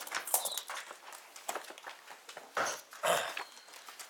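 Court papers rustling and ring-binder bundles being handled on a desk as pages are turned to find a tab at the back of the bundle, with irregular knocks and scuffs, the loudest a little before and just after three seconds in.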